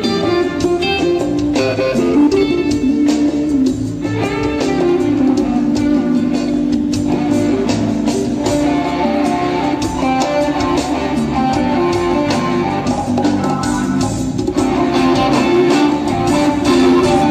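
Live band music with electric guitar playing over the band.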